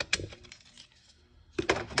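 Plastic rear cover of a Denso alternator being pulled off by hand: a sharp plastic click at the start and a few more clicks and clatter near the end.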